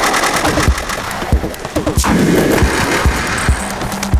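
Live electronic music from a Eurorack modular synthesizer and Yamaha MODX: irregular deep kick-like hits under glitchy, noisy textures, with a steady low drone coming in near the end.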